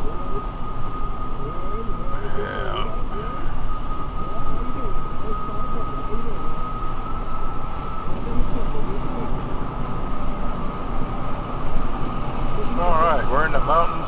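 Steady road and engine noise inside a vehicle cab at highway speed, with a thin, steady high whine through the first half. Short bursts of voice come in a couple of seconds in and again near the end.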